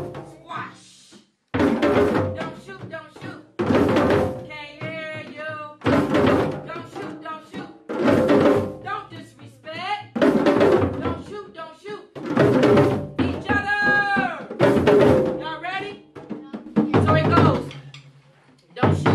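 Hand drums (djembes) and tall stick-played drums struck together in loud group hits about every two seconds, with voices chanting and calling out between the hits.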